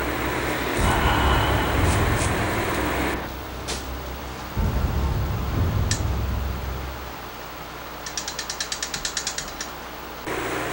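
A quick run of mechanical ratcheting clicks, about ten a second for under two seconds near the end, after a stretch of steady low hum and hiss.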